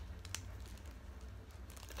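Faint handling noise of a small plastic phone mount being worked in the fingers: light rustling and a few soft clicks.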